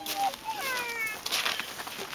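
A small child's high voice making wordless, sliding vocal sounds, with a couple of falling cries in the middle.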